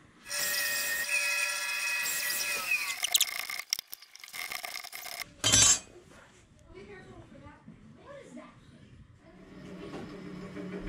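A power saw cutting out a small maple bridge-plate blank, running for about three seconds with a steady whine that dips in pitch twice as it cuts. Then come a few clicks and one short loud stroke of wood-working noise, followed by faint shop sounds.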